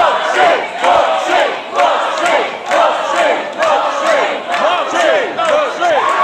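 Audience cheering and shouting, many voices at once, with repeated shouts that fall in pitch.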